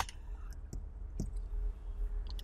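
A few light clicks and taps of a hand handling a paper pizza-slice cutout and a marker against a whiteboard, the sharpest click right at the start and fainter ticks after it.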